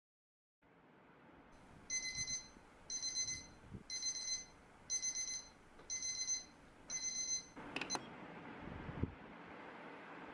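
Digital alarm clock beeping: six bursts of high beeps about a second apart, then it stops suddenly. A couple of soft knocks follow over faint room hiss.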